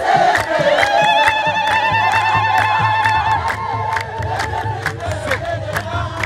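Crowd clapping in a steady rhythm of about two and a half claps a second, with a kebero drum beating and voices chanting. A single high, wavering voice holds one long trilling cry from about a second in until nearly five seconds, like ululation.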